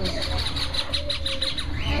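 Caged parrots chirping: a quick run of short, high chirps, several a second, then a brief rising call near the end.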